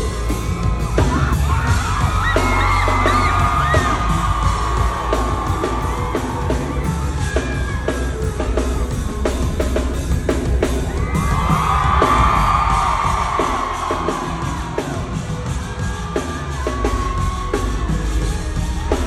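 Live band playing with a heavy bass and drum beat under a crowd screaming and cheering. The screaming swells about two seconds in and again around twelve seconds.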